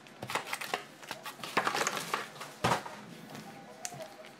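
Foil wrappers of trading-card packs crinkling and rustling as a stack of packs is shuffled by hand, with sharper crackles about one and a half and two and a half seconds in.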